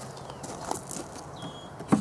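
Bee smoker being puffed into a hive entrance: a few soft, short puffs of air from its bellows.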